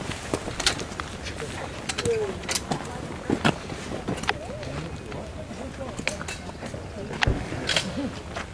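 Footsteps of a group of people walking at an irregular pace, with scattered voices talking quietly.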